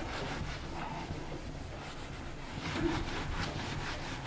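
Whiteboard eraser rubbing across a whiteboard in repeated back-and-forth strokes, wiping off marker writing.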